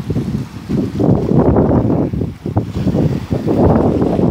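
Wind buffeting the microphone: a loud, gusty rumble that swells and dips.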